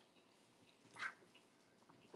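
Near silence, broken by one brief faint sound about a second in.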